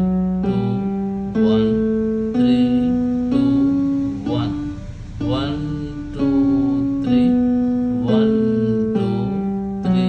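Yamaha portable electronic keyboard playing the D major scale with the left hand, one sustained note about every second. It steps up to the top D about four seconds in, then steps back down the scale.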